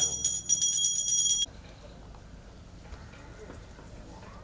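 A temple bell rung in quick repeated strokes, its bright metallic ringing stopping abruptly about a second and a half in; after that only low background noise remains.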